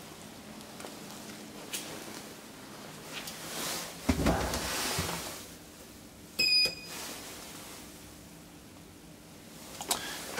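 Small refurbished ManKan traction elevator car running with a low steady hum. About four seconds in there is a thump, followed by about a second of rumbling. A short electronic beep from a call button comes about six and a half seconds in.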